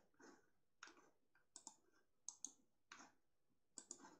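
Faint computer mouse clicks, single and in quick pairs, every half-second to a second with near silence between.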